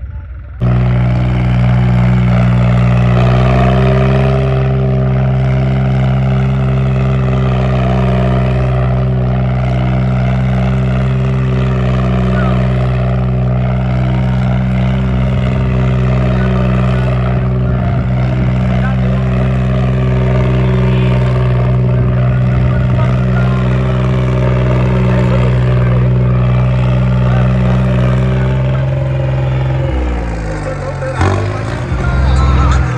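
Tractor diesel engine held at steady high revs through a tall straight exhaust stack while the tractor spins in tight circles. The sound swells and bends about every four seconds as it comes round.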